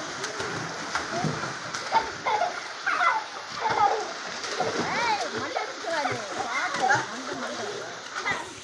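Water splashing and churning in a small swimming pool as children thrash about in it, with children's voices calling and shouting over the splashing.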